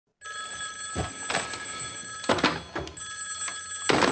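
A rotary desk telephone ringing twice, each ring a steady multi-tone bell lasting about two seconds and one second, with a short pause between. The second ring stops just before the end with a knock as the receiver is lifted, and there are a few soft knocks and paper rustles from handling a folder in between.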